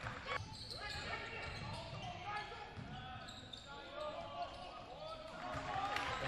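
Live basketball game in a gym: a basketball bouncing on the hardwood court, with sneakers squeaking in short chirps and voices echoing around the hall.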